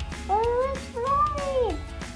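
A young child's voice making two long, wordless sliding 'ooh' sounds, each rising then falling in pitch, over steady background music.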